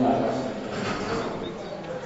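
A man's voice speaking over a microphone and PA, loudest right at the start and then softer.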